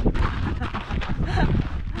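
Wind buffeting the microphone in gusts, a heavy uneven rumble, with brief bits of voice.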